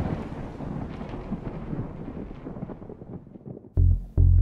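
A deep, thunder-like rumble dying away, with scattered crackles through it. Near the end, low musical notes come in as the song starts.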